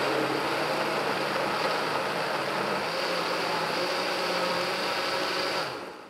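Countertop blender motor running steadily, pureeing chunks of tomato, cucumber and red onion into a smooth liquid soup. The motor stops shortly before the end.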